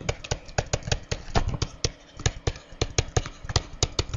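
Stylus tapping and scratching on a tablet screen as words are handwritten: irregular sharp clicks, several a second.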